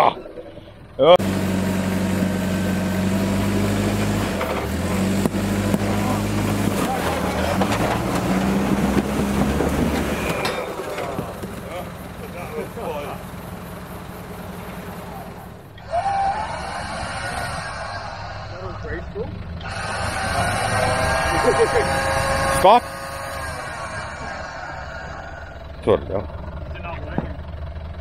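Land Rover Discovery turbo-diesel engine working under load over rocks, its revs rising and falling as it crawls, with tyres scrabbling on stone. Later, after a cut, voices call out briefly over the engine.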